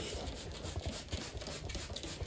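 Quiet room tone with faint rustling and small soft bumps, typical of a handheld phone being moved about while filming.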